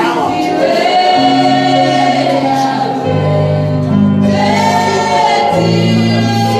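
Gospel music with a choir singing slow, long-held chords that change every second or two.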